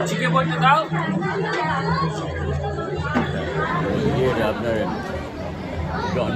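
Speech only: people talking and chattering, over a steady low hum.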